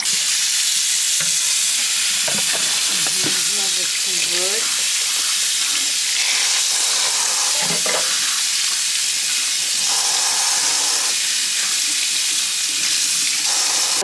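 A kitchen tap running steadily, its stream splashing onto raw chicken breasts and gloved hands over a metal colander in a stainless steel sink.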